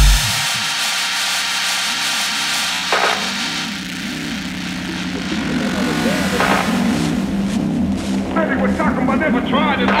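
Peak-time techno track in a breakdown: the kick drum drops out right at the start, leaving a repeating synth bass figure and two brief whooshing sweeps. From about eight seconds in, a warbling, voice-like synth layer builds as the track swells back up.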